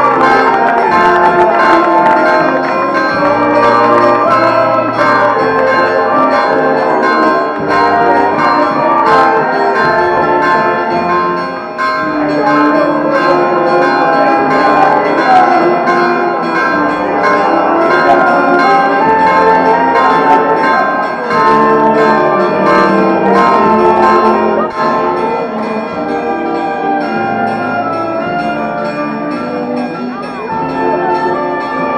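Church bells ringing a continuous peal, one strike quickly following another, each ring held and overlapping the next.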